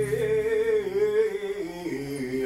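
A man's solo singing voice holding and bending a drawn-out note with a wavering pitch, under a keyboard chord that stops about half a second in.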